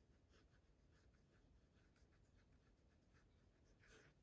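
Near silence, with the faint scratching of a black fine-tip marker writing a word in cursive on a paper planner insert.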